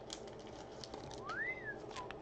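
Faint clicks of a trading card being handled, with one short whistle-like tone about a second and a half in that glides up and then falls slightly.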